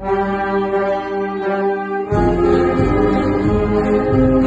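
Amateur wind band playing a march: the upper winds and brass hold a chord for about two seconds without the bass, then the full band with low brass comes back in.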